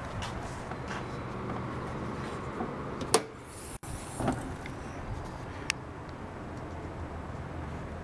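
Car hood latch releasing with one sharp metallic click about three seconds in, then a softer thump as the hood is lifted, over a steady low hum.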